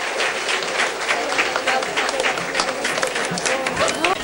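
Audience applauding: many hands clapping at once, dense and steady.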